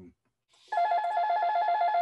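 Electronic telephone ringer warbling, a tone that flips rapidly between two close pitches, starting about half a second in.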